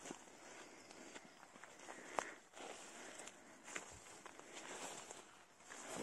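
Faint footsteps through tall grass and forest undergrowth: soft rustling and swishing of stalks, with occasional small clicks.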